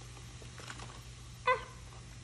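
Faint clicks and wet handling noise as a plastic toy seashell is pulled apart in a tray of fizzy water, with one brief squeak about a second and a half in.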